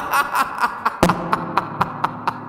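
A man laughing hard, in a rapid string of short breathy bursts, about four or five a second.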